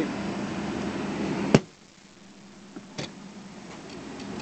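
Steady hum inside the cabin of a running SUV, cut short by one sharp knock about a second and a half in, after which it is much quieter; a faint click follows near the end.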